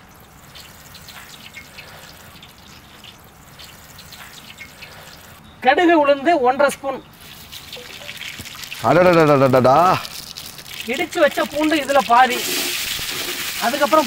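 Cooking oil poured in a thin stream into a large aluminium pot, a faint trickle, then men's voices. Near the end the hot oil starts to sizzle as mustard seeds go in for tempering.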